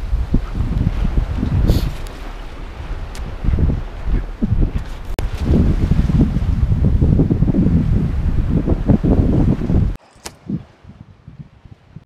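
Wind buffeting the camera's microphone at the sea's edge: a loud, gusty low rumble that cuts off abruptly about ten seconds in, leaving a much quieter background.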